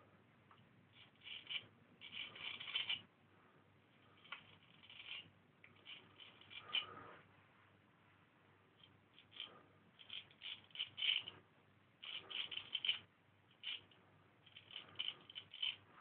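Marshall Wells Zenith Prince straight razor scraping through lathered stubble on the neck and jaw, a faint dry crackle. It comes in about eight short runs of strokes with brief pauses between.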